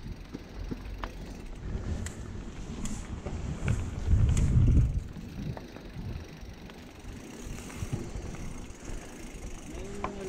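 Mountain bike rolling along a dirt singletrack, heard from a camera on the bike: a steady low rumble of tyres and wind with scattered clicks and rattles, swelling louder for about a second around four seconds in.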